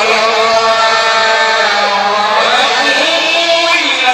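Male voice chanting a Maulid recitation, amplified through a microphone, holding long notes that glide up and down in pitch.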